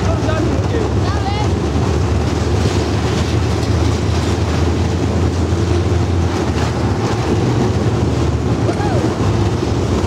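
Roller coaster car running fast along a steel track: a loud, steady low rumble of the wheels, with wind buffeting the microphone.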